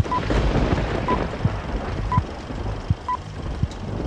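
Old film-leader countdown sound effect: a short, clean high beep once a second, four times, over a steady whirring, crackling film-projector noise.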